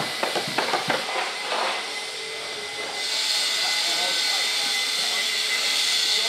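Busy-hall chatter with scattered knocks, then about halfway through a steady high hiss sets in: an angle grinder grinding the end of a steel pipe.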